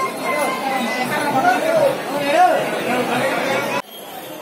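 Several people talking at once in a crowded, echoing hall. The chatter cuts off abruptly near the end and leaves a quieter crowd murmur.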